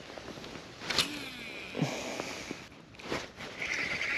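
A baitcasting reel whirring briefly as a cast goes out and line is wound back in, with a sharp click about a second in.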